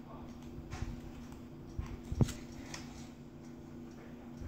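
Small folded paper note being unfolded by hand, with faint rustles and clicks, and one sharp thump a little past halfway, over a steady low hum.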